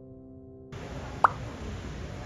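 Soft background music stops abruptly a little way in, giving way to outdoor ambience. About a second in comes one short pop that rises quickly in pitch, the loudest sound, as a date caption appears on screen.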